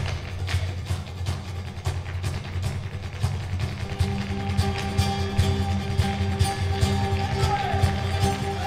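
Live flamenco fusion ensemble music: a low sustained drone under sharp, irregular percussive strikes from flamenco footwork and hand claps. About halfway through, a steady held note joins in above the drone.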